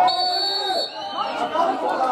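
Indistinct chatter of several voices talking over one another, with a thin, steady high tone for most of the first second.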